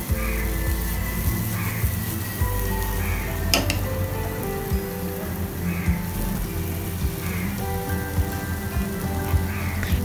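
Background instrumental music with a slow melody, over a faint sizzle from yam slices frying in a pan. One sharp tick sounds about three and a half seconds in.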